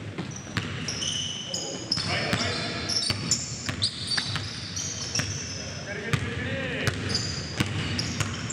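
A basketball being dribbled on a gym floor, its bounces ringing in a large hall, with many short, high-pitched sneaker squeaks as players cut and defend.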